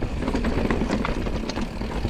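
A full-suspension mountain bike (Forbidden Dreadnought) rolling fast down a rocky, rooty trail: tyres rumbling over stones and roots, with scattered clicks and knocks as the bike and its drivetrain rattle over the bumps.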